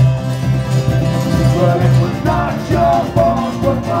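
Live band music: fast-strummed guitar over a steady, pulsing bass line, in a folk-rock song.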